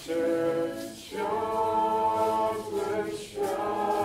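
A group of voices singing together without accompaniment in long held notes, with brief breaks between phrases about a second in and again about three seconds in.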